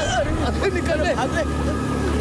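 Exclamations and cries from voices, over the low steady drone of a motor scooter's engine running.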